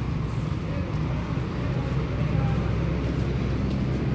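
Steady low rumble of a vehicle engine running, with faint voices.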